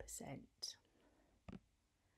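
The last syllable of a woman's spoken narration fading out, then near silence with a short breathy hiss and one faint click.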